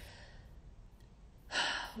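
A short pause with faint room tone, then a sharp, audible in-breath through the mouth about a second and a half in, just before the speaker starts talking again.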